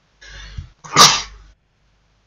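A person sneezes once: a breath drawn in, then a sudden loud sneeze about a second in that dies away quickly.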